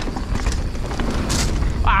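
Wind buffeting a riding camera's microphone over the rumble of a mountain bike's Maxxis Assegai tyres rolling down a dirt singletrack, with a brief hiss about one and a half seconds in.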